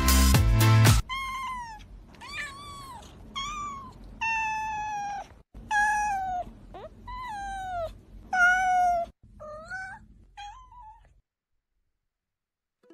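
A white cat meowing about nine times in a row, each meow high and falling in pitch. The last few meows are shorter and fainter.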